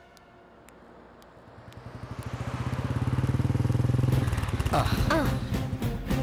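Royal Enfield motorcycle's single-cylinder engine coming closer, growing louder over a couple of seconds into a steady, rapid beat, then dropping away near the end. A brief voice sounds just before the end.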